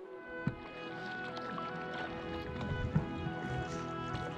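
Instrumental background music over the splashing of kayak paddle strokes in calm water, which comes in just after the start, with two sharper thumps about half a second and three seconds in.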